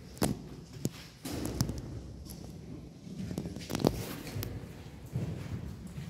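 Footsteps walking along a cave path, with a few sharp knocks or scuffs among them; the loudest comes about four seconds in.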